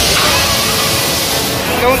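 A steady rushing hiss that starts suddenly as the mall amusement ride moves, with music and a voice faintly behind it.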